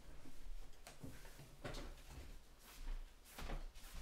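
A few soft knocks and thumps in a quiet small room, about one every half to one second, with a low hum underneath: someone moving about away from the microphone.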